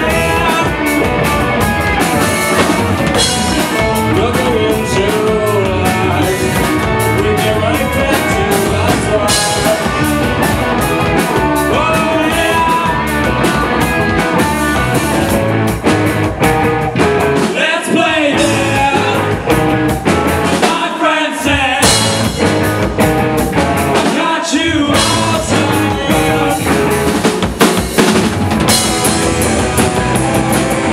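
Alternative rock band playing live: distorted electric guitars, electric bass and drum kit, with a male lead vocal. The low end drops out briefly three times in the second half.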